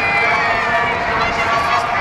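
Shetland ponies galloping on a soft arena surface, their hoofbeats under steady crowd noise and a race commentator's voice echoing over the public address.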